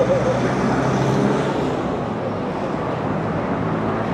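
Road traffic: a vehicle engine running steadily in the street, a little louder about a second in.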